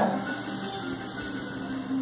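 A long, slow breath drawn in, heard as a steady hiss: the inhale of a guided deep-breathing exercise.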